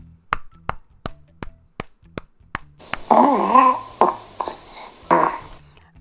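A hand patting a baby's back through a burp cloth, about seven soft pats at roughly three a second. The pats are followed by a drawn-out, wavering burp-like voiced sound about three seconds in and a shorter one near the end.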